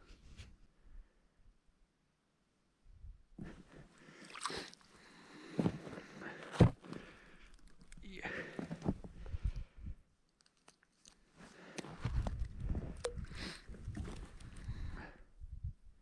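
Snow and ice crunching in uneven stretches, with scattered sharp clicks and knocks, starting about three seconds in, as things are handled on the snow-covered ice beside an ice-fishing hole.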